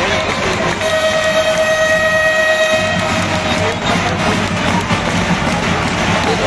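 A horn sounds one steady, held note for about three seconds, starting about a second in, over the noise of a large arena crowd and music.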